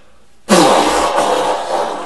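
A person blowing their nose hard into a tissue: a sudden, loud, long blow starting about half a second in and lasting well over a second.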